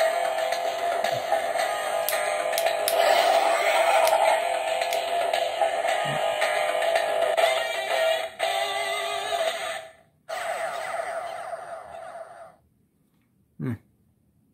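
Dino Fury Morpher toy playing its electronic morphing sequence: music and sound effects from its small built-in speaker, with a brief break about ten seconds in. It cuts off abruptly near the end, followed by a short low sound.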